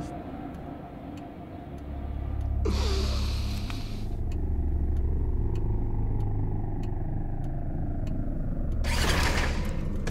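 Film sound design: a deep, steady low rumble builds about two seconds in. A rushing whoosh with a falling tone comes about three seconds in, and another hissing surge near the end, over a faint regular ticking about twice a second.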